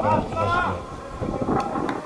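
A man's voice talking over open-air background noise, with a couple of short sharp knocks near the end.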